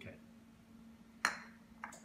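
A single short electronic beep from the kitchen oven about a second in, fading quickly. It marks the oven coming up to its set temperature.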